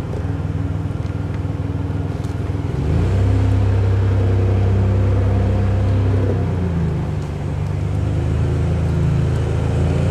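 Vehicle engine running, heard from inside the cabin while driving. It speeds up and gets louder about three seconds in, eases off around seven seconds, then picks up again.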